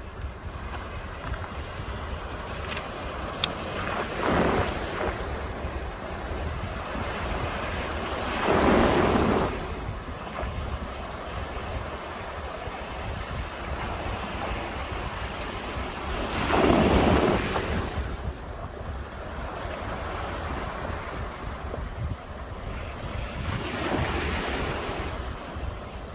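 Sea waves breaking and washing up a pebble beach, four louder surges between a steady wash of surf, with wind rumbling on the microphone throughout.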